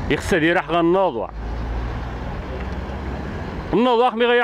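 A man's voice for about a second, then a steady low rumble from a motor vehicle's engine in the street, until he speaks again near the end.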